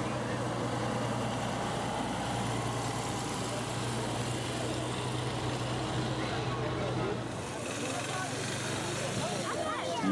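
Engine of a military coach bus running as the bus pulls slowly past over cobblestones, a steady low hum over street noise that fades away about seven and a half seconds in.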